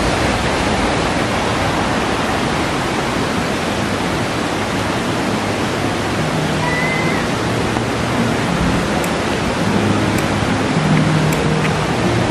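Fast river rapids rushing steadily over boulders, an even loud wash of water noise.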